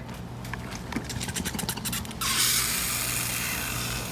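Baking soda dropping into vinegar in plastic bottles: light crackles and clicks, then a little over two seconds in a sudden steady hiss as the mixture fizzes and foams up, giving off the gas that inflates the balloons.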